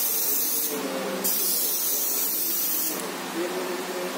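Airbrush spraying paint in two bursts of high hiss: the first stops under a second in, the second starts just after a second and runs about two seconds. A steady low hum carries on underneath.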